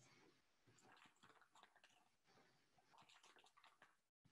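Near silence with faint, irregular rustling and light clicks: a plastic measuring tablespoon scooping pickling salt from a plastic bag and tipping it onto shredded cabbage in a stainless steel bowl.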